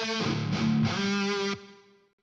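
Overdubbed distorted electric guitar tracks playing back from a mixing project, heavily effected: held chords of a hard riff between heavy rock and metal, which stop about three-quarters of the way through and ring out.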